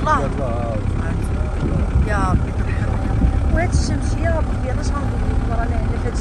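Steady low rumble of a car driving, heard from inside the vehicle, with snatches of a voice over it.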